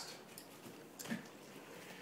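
Faint bubbling and fizzing of dry ice in warm soapy water, with a few small soft pops. A quiet spoken "okay" about a second in.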